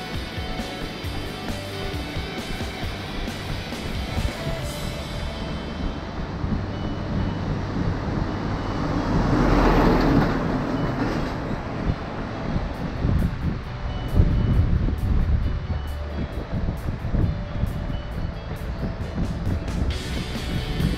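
Background music, with a road vehicle passing about halfway through: its noise swells, peaks and fades over a few seconds.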